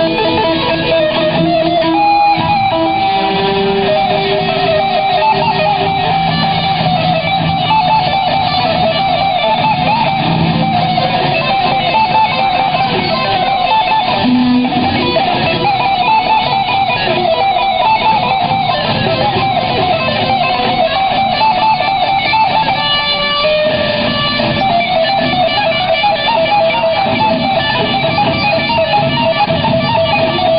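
Electric guitar played live, a continuous melodic line of picked and strummed notes.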